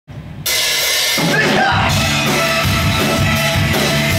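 Live rock band playing loudly: a drum kit with cymbals and hi-hat over electric guitar and bass guitar. The full band comes in suddenly about half a second in.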